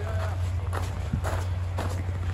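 Footsteps on thin snow, about two steps a second, over a steady low hum; a voice trails off at the very start.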